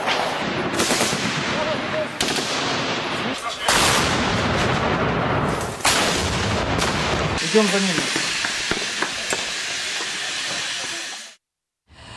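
Gunfire in a street battle: many sharp shots over a continuous din of firing, with voices heard during a lull in the second half. The sound stops abruptly near the end.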